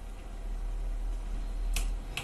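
A low steady hum, with one short sharp click near the end.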